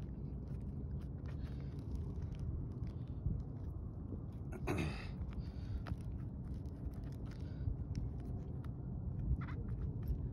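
Metal flashing of a rubber pipe boot being pressed and bent down onto asphalt shingles by hand: light scrapes and small clicks over a low steady rumble, with one louder scrape just before halfway.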